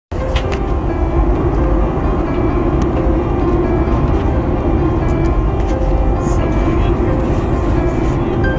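Steady airliner cabin noise in flight, a continuous roar of engines and airflow that is strongest in the low end, with faint music over it.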